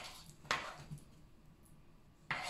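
One light knock of a metal fork about half a second in, as mashed banana is scraped off a chopping board into a bowl; otherwise faint room tone.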